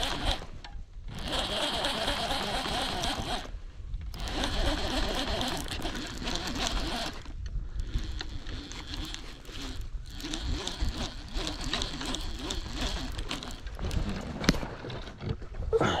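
Fishing reel being cranked to bring in a hooked catfish: a whirring, ratcheting crank in several spells of a few seconds each, with short pauses between them.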